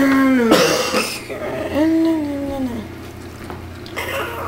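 A person's wordless vocal sounds: a short held voiced note that breaks into a harsh, cough-like rasp, then a second drawn-out voiced sound that rises and falls about two seconds in.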